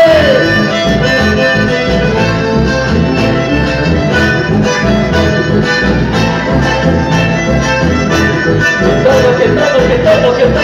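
Live band music led by accordion and bandoneon over electric bass and guitars, with a steady beat. A sung line trails off right at the start and singing comes back in near the end.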